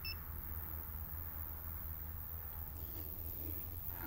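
A single short, high electronic beep just after the start, from the photographer's camera or flash gear, over a faint steady low rumble.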